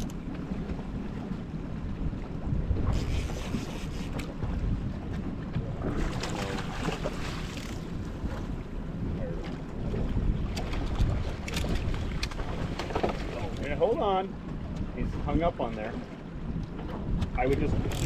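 A small fishing boat's outboard motor running steadily with a low hum, under wind noise on the microphone. Short bits of voice come through now and then.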